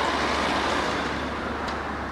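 Steady rush of road vehicle noise that slowly fades over the two seconds.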